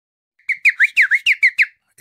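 A quick run of about eight short whistled chirps, each sweeping up or down in pitch, lasting a little over a second.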